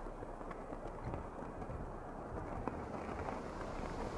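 Quiet, steady outdoor ambience: a low hiss of wind with a few faint ticks.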